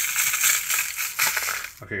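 Fine gold flakes poured from a metal pan into a disposable bowl on a scale, making a steady sandy hiss of the grains pattering down.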